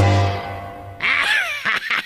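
Music fading out, then about a second in a nasal animal call with a falling pitch, followed by a quick run of short calls.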